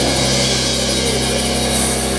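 Live rock band playing: electric guitar and other instruments holding steady notes over a drum kit, with cymbals washing in the highs.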